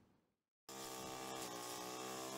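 After a brief silence, a brush cutter's small engine comes in about two-thirds of a second in, running at a steady speed with an even buzzing hum.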